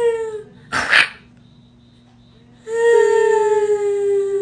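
A woman's voice giving a drawn-out, zombie-like moan on one held pitch that sags slightly. There is a short one at the start and a longer one of about two seconds in the second half, with a short breathy hiss about a second in.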